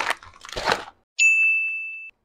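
A plastic snack pouch crinkling as it is handled, breaking off just before a second in. Then an edited-in ding chime rings once for about a second, fading slowly.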